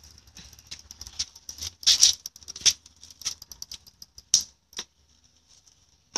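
A small child's bicycle clicking and rattling irregularly as it is pushed off and pedalled over concrete, quietening after about five seconds.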